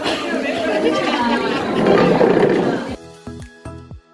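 Crowded café chatter, many voices talking at once, over background music. About three seconds in, the chatter cuts off and only the music goes on: a tune of short, sharp notes.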